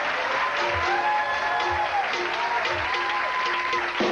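Studio house band playing a tune of long held notes, with audience applause underneath.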